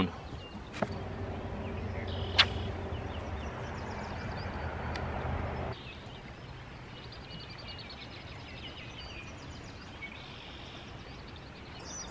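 A plastic cooler being handled, with a sharp latch click about two seconds in. Then, from about six seconds, quieter outdoor ambience with faint bird chirping.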